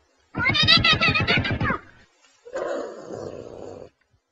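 Domestic cat yowling: one loud, drawn-out call with a wavering pitch, then after a short pause a second, quieter and rougher call.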